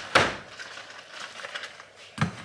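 A refrigerator door shutting with a sharp thud, followed by quieter clicks and rustles of handling.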